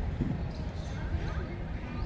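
Faint, indistinct voices over a steady low rumble, with no breaking strikes heard.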